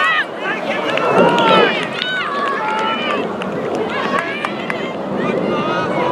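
Young voices shouting calls across an open rugby pitch during play: several short, high-pitched shouts over a steady outdoor noise.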